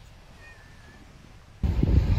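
Wind buffeting the microphone, loud and low, starting suddenly about one and a half seconds in. Before it there is only a faint outdoor background hush.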